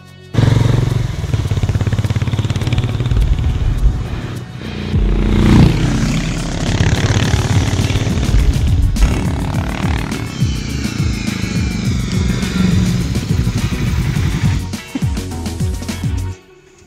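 Harley-Davidson X440 motorcycle running on a track, its single-cylinder engine heard loud under background music. The sound cuts in suddenly about half a second in, with the engine pitch rising and falling later on.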